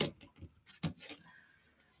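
Faint handling noise from a small art canvas being turned and shifted by hand: a few light taps and rustles in the first second, then quiet room tone.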